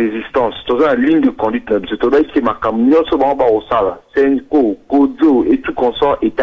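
Speech only: one person talking continuously over a telephone line, the voice sounding narrow with its upper range cut off.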